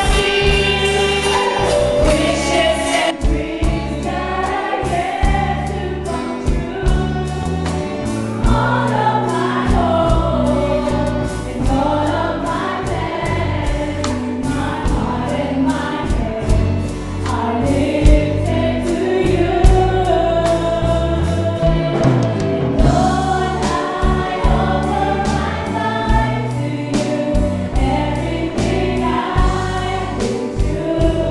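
A live worship band playing a praise song: a woman singing lead into a microphone, with backing singers, over keyboard, guitars and a drum kit keeping a steady beat.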